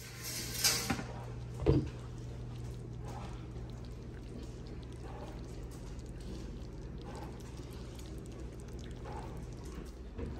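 Glass slow-cooker lid being lifted off and handled: a brief rustle about half a second in, then one sharp knock near two seconds. Afterwards a steady low hum runs under faint handling noises.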